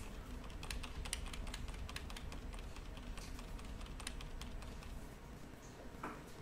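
Computer keyboard keys clicking in a quick, irregular series, the keystrokes stepping back through the moves of a finished chess game on screen.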